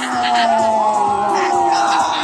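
Crowd cheering, with long drawn-out 'ohh' yells and whoops, over background music.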